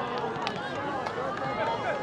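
Several voices shouting and calling over each other at an outdoor soccer game, no clear words, with one sharp knock about half a second in.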